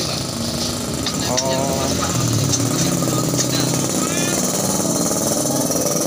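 Busy outdoor market din: a motorcycle engine running over a steady background of traffic noise, with short snatches of voices.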